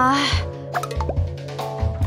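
Light comic background music with steady sustained notes over a bass line, a few short percussive clicks and a quick falling blip about a second in.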